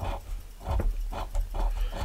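A coin scratching the latex coating off a scratch-off lottery ticket in short repeated strokes, about four a second.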